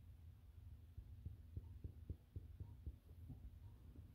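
Faint, soft fingertip taps on an upholstered fabric couch cushion, about ten in quick succession at roughly four a second, starting about a second in and stopping a little after three seconds, over a low steady hum.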